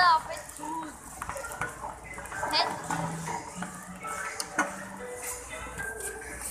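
Busy supermarket ambience: people's voices and background music. A high-pitched voice squeals right at the start, and there is a sharp clatter about four and a half seconds in.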